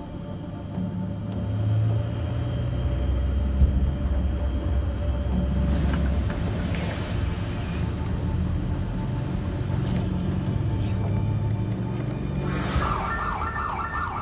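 A low rumble, then, about a second before the end, a boat's engine alarms begin sounding in a rapid repeating electronic warble. The engine, put in gear with line wrapped around its propeller, is dying.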